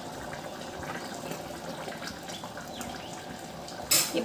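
Mutton curry boiling in an open pressure cooker on a gas stove: a steady bubbling hiss. A short sharp knock comes just before the end.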